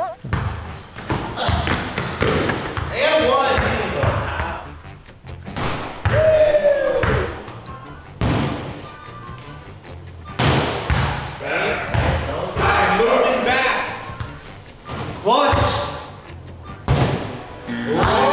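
A small basketball repeatedly thudding as it is shot at a mini hoop and bounces on the floor, a dozen or so sharp knocks spread unevenly through the stretch, with short shouts from the players and music underneath.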